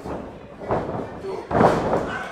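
A wrestler's body slamming onto the wrestling ring's mat: one loud thud about one and a half seconds in, after a smaller thump a little before it.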